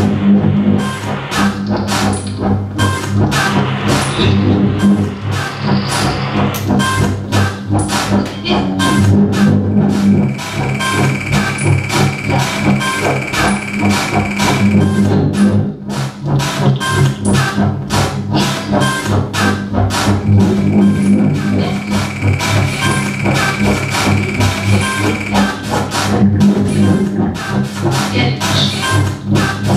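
Live experimental electronic noise music from laptops, electronics and an electric guitar: a dense stream of rapid clicks over a steady low drone. A high held tone comes in twice, about ten seconds in and again about twenty seconds in, each time for roughly four to five seconds.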